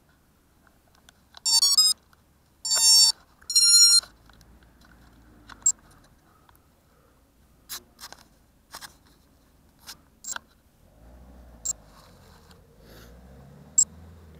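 DAL RC 12A electronic speed controllers on a racing quadcopter sounding their power-up tones through the motors: a rising run of notes, then two more beeps about a second apart, the sign that the flight battery has just been connected. A scatter of light clicks and knocks from handling the quad follows.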